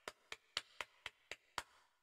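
Quick, even ticking: light clicks about four a second, stopping about one and a half seconds in.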